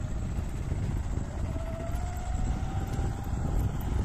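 Wind buffeting a phone microphone outdoors, an uneven low rumble, with a faint hum in the middle that rises slightly in pitch.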